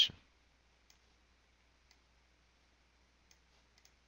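A few faint, sparse computer mouse clicks, roughly a second apart, over near silence.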